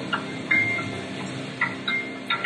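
Background soundtrack music from a documentary, sustained low tones with a few short, sharp high notes, played back over loudspeakers in a room.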